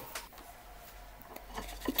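Quiet kitchen room tone for most of the time, then a few light knocks and taps near the end as utensils are handled.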